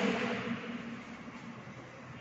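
Faint scratching of chalk on a blackboard as a word is written, over quiet room noise.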